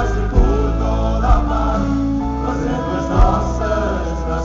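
Live band music amplified through a stage PA: a full pop-folk band with bass, drums and guitars playing sustained chords, with a few sharp drum hits.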